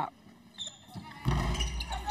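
Quiet arena court sound for about a second, then a sudden burst of noise with a heavy low rumble as the missed free throw comes off the rim and players scramble for the rebound.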